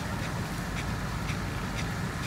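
Water spraying from a center-pivot irrigation rig's end-gun sprinkler, a steady hiss with a short rasping tick repeating about twice a second.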